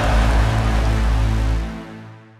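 Cinematic logo sting: the tail of a heavy hit, a deep held bass tone under a noisy shimmering wash, dying away near the end.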